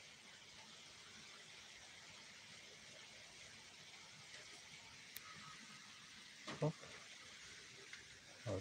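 Faint, steady outdoor background hiss, with one short voice sound about six and a half seconds in.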